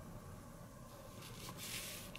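Faint scratching of a hobby blade tip picking paint off a small plastic model part, chipping the colour coat over a hairspray layer; a little louder in the second second, over low room hiss.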